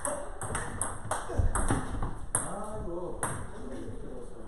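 Table tennis rally: a quick series of sharp clicks as the plastic ball is struck by the rackets and bounces on the table. A man's voice calls out in the middle.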